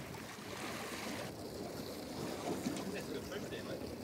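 Steady wash of sea and wind around a small boat on open water, with a faint voice underneath; the hiss thins out in its upper range about a second in.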